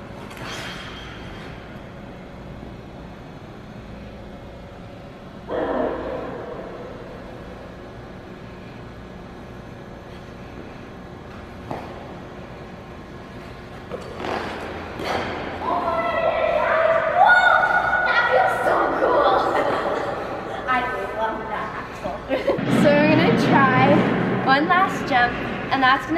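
Figure skate blade scraping on rink ice during a single axel attempt, one sudden scrape about five and a half seconds in that fades over about a second. From about fourteen seconds on, a girl's voice without clear words comes in and is the loudest sound.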